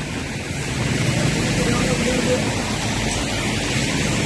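Steady rushing market background noise, with a faint distant voice about two seconds in.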